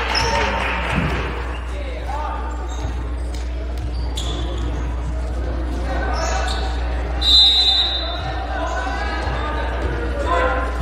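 Indoor gym sound at a volleyball game: crowd chatter with a ball bouncing and knocking on the court floor. About seven seconds in comes a short, shrill referee's whistle blast.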